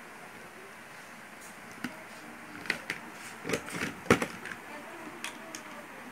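A few short clicks and light knocks, the loudest about four seconds in, from wires, spade connectors and pliers being handled while a switch is wired up.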